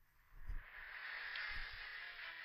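Anime soundtrack sound effects: a low thud about half a second in, then a steady hissing rush, with a second low thud about a second later.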